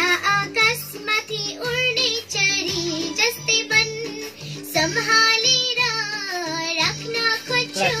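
A young girl singing a Nepali song over a backing track with a steady, regular beat.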